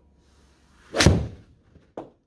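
Golf swing with a Titleist TMB 4-iron: a rising swish of the downswing ending in one loud, sharp strike of the iron on the ball off a hitting mat about a second in, then a short, smaller knock near the end.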